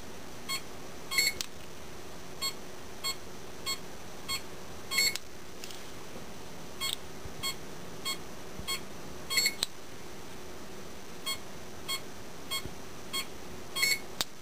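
Electronic acupuncture-point measuring device beeping as its probe is pressed to points on the toes. Short beeps come about every 0.6 s, with a louder double beep about a second in, about five seconds in and near nine and a half seconds.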